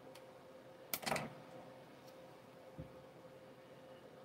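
A sharp click and a brief crisp rustle about a second in, from hands working a small paper model part, then a soft thump near the end, over a faint steady hum.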